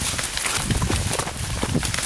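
Maize leaves and stalks rustling continuously as a person pushes through them on foot, with irregular low thuds of footsteps.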